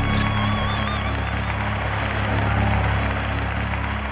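Live worship song ending: the band holds a final chord over a steady bass note, with a wavering held high note that stops about a second in. The music starts to fade near the end.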